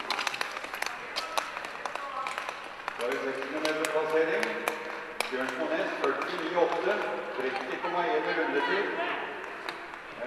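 A man's voice giving race commentary, starting about three seconds in, with sharp, scattered clicks in the first few seconds.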